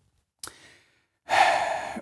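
A man's audible breath, a sigh-like rush of air, coming in over a second into a near-silent pause, after a faint brief click.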